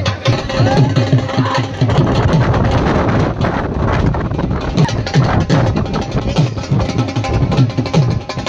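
Loud music driven by fast, steady drumming, with low thudding beats.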